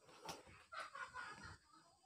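Near silence: room tone with a few faint, scattered background sounds.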